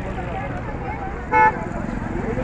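Crowd of people talking over one another, with one short vehicle-horn toot a little over a second in, the loudest sound.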